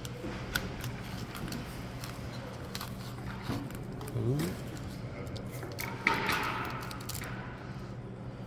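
Small cardboard box with tape being pulled apart by hand: scattered small clicks and scrapes, with a longer scratchy tearing sound about six seconds in.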